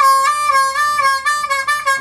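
C diatonic harmonica playing one held note, the four draw bent, clean with no neighbouring hole bleeding in. It holds steadily, with slight wavers in pitch.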